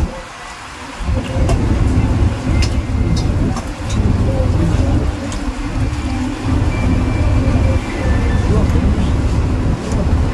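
Steady low rumble of a river launch's engine, which drops away for about the first second and then comes back.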